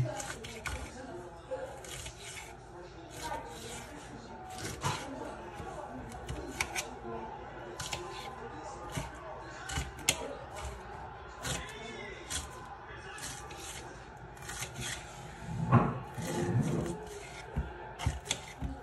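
Knife dicing bell peppers on a metal sheet pan: irregular sharp taps as the blade strikes the tray.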